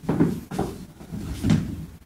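Dull, hollow thumps of steps on a wooden stage platform, about four of them roughly half a second apart.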